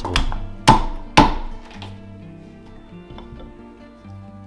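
Carving axe chopping into a green-wood spoon blank held on a chopping block: three sharp chops in the first second or so, each striking the same spot while the blank is angled to cut a curved surface. Background music with steady notes runs underneath and is all that is left after the chops.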